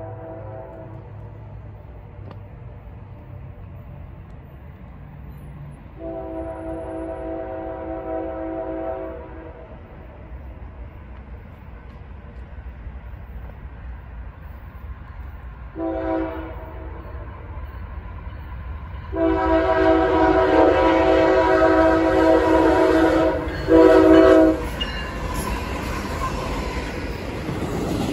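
Approaching CSX locomotive's multi-note air horn sounding four blasts, long, short, long, short, the last two much louder as it nears, over a steady low rumble from the oncoming intermodal train. Near the end the rumble of the lead ET44AH locomotive and train rises as it reaches the listener.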